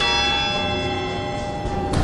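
Large tower clock bell struck once by its hammer, then ringing with several steady tones together and slowly fading. This is the bell on which the clock strikes the hours.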